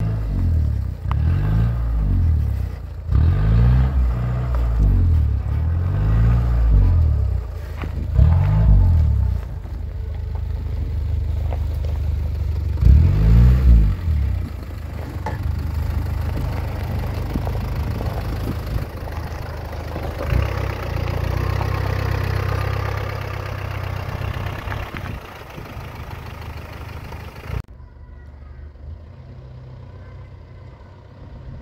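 Engine of a lifted off-road FSO Polonez revving in repeated rising and falling bursts as it climbs over rocky ground, then running more steadily under load. Near the end the engine sound cuts off abruptly, leaving a much quieter background.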